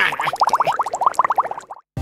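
Cartoon bubbling sound effect: a fast, even run of short rising plops, about fifteen a second, that cuts off abruptly near the end.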